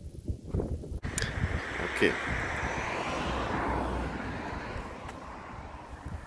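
A passing vehicle: a rushing noise that starts about a second in, slowly falls in pitch and fades away.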